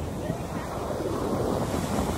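Ocean surf washing onto a sandy beach, with wind buffeting the microphone as a steady low rumble.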